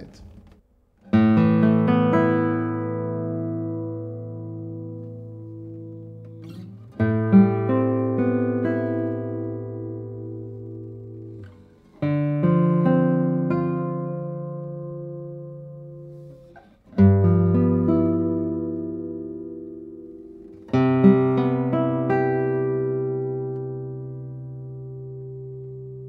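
Daniele Marrabello 2023 No. 165 classical guitar (spruce top, Indian rosewood back and sides, nylon and carbon strings) playing five chords, about one every four to five seconds. Each chord is left to ring and dies away slowly, with a long sustain.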